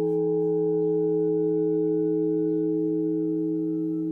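Meditation drone of several steady, layered tones, like a sustained singing bowl, held unbroken without any strike.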